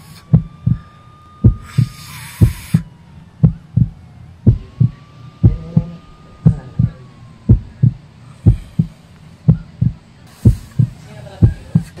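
Heartbeat sound effect: paired low thumps, lub-dub, about once a second, over a soft drawn-out tone that slowly rises, holds and sinks in pitch twice.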